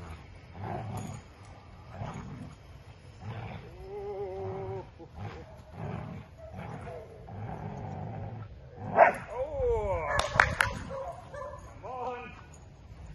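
Dog growling in repeated rumbling bursts while tugging on a tug toy with a man. About nine seconds in comes a louder burst of sharp, high calls, the loudest thing here.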